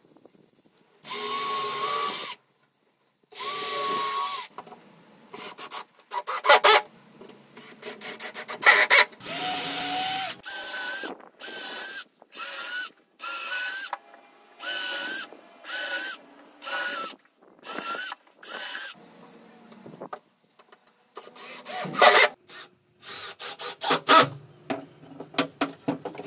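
Cordless drill running into pine boards: two long steady runs near the start, then a string of short trigger pulses about once a second, and a few shorter bursts and knocks near the end.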